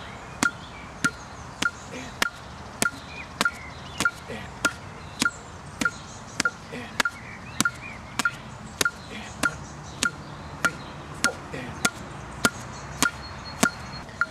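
Metronome app clicking steadily at about 100 beats a minute, about one sharp tick every 0.6 seconds, with padded blows of boxing gloves striking the partner's gloves in time with it.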